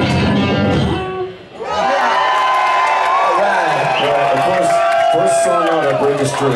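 Live band of two electric guitars and drums playing loudly, then stopping abruptly about a second in; after a brief drop, the audience cheers and whoops.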